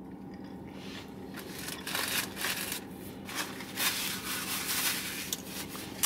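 Paper sandwich wrapper rustling and crinkling in several short bursts, mostly in the second half, over a faint steady low hum.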